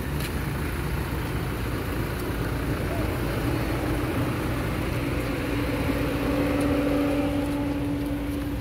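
Crowd and traffic noise: a steady din of many people's voices mixed with running car engines. About five seconds in, a steady low hum joins and holds to the end.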